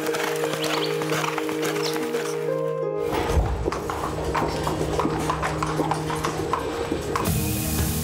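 Background music with sustained tones over a horse's hoofbeats; after about three seconds the hooves sound heavier, stepping on hard ground. Near the end a hose starts spraying water.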